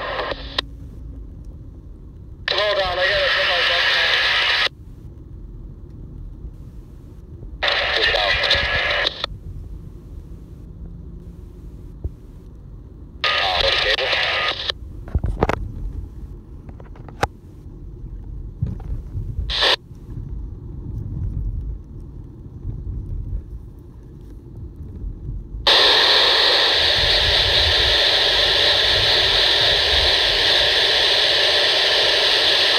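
Handheld digital-trunking scanner receiving UHF business-band two-way radio traffic. Its speaker plays three short bursts of thin, band-limited voice, each cut off by the squelch, followed by a few brief clicks. Over the last few seconds it opens into steady loud static hiss, under which a low rumble runs throughout.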